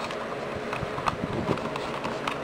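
Fingers pushing a 9-volt battery into a smoke detector's plastic battery compartment: a run of small clicks and scrapes over a rustling handling noise.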